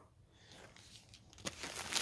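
Quiet room tone, then a faint click and soft rustling near the end.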